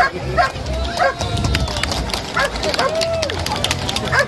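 A dog in bite training whining and yipping, with two long rising-and-falling whines about a second and three seconds in among short sharp yips.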